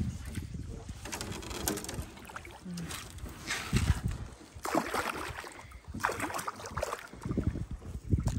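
A hooked peacock bass splashing at the surface beside a boat as it is brought in for landing: a few irregular splashes spread over several seconds, with water lapping between them.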